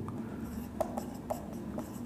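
Marker pen writing on a whiteboard: a few short squeaks of the tip against the board, scattered through the moment.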